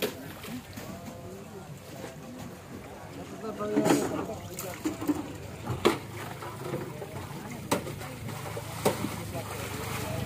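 Background voices of several people talking, with a handful of sharp knocks in the middle and a low engine hum that builds in the second half.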